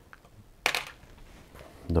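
A single short, sharp click a little over half a second in, from small hard objects being handled on the work bench.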